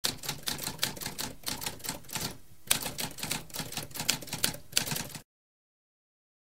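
Typewriter sound effect: rapid keystrokes clacking, with a brief pause about halfway through, stopping about five seconds in.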